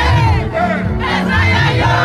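Live Congolese rumba band playing loud, with a repeating bass line, and a crowd singing and shouting along close by.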